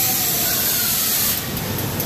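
Rush of air hissing from a foam-ball play barn's air blaster, cutting off suddenly about one and a half seconds in, followed by a few light clicks.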